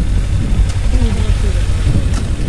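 Kawasaki Ninja 300's parallel-twin engine running under way, buried in a heavy low rumble of wind on the microphone, with faint voices about halfway through.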